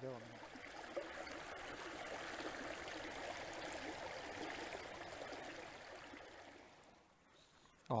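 Shallow creek water running over rocks in a small riffle: a steady rushing that fades away about six to seven seconds in.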